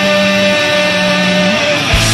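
Punk rock band in an instrumental break: electric guitar holds ringing chords over a sustained bass line, with notes sliding down near the end. A drum hit brings the full band back in at the very end.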